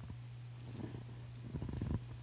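A pause in speech: a steady low hum of room tone, with a few faint soft sounds near the end.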